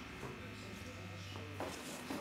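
A steady low electrical buzz with a fine even hum, faint voices murmuring underneath.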